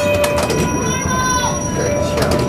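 Steel wheels of a vintage electric tram squealing on the rails as it rolls slowly, several steady high-pitched squeals overlapping, one dipping in pitch and dying away about one and a half seconds in. A crowd is chattering underneath.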